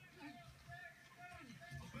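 Quiet voices from a TV sports broadcast, heard through the television's speaker, with no distinct strikes or other sounds standing out.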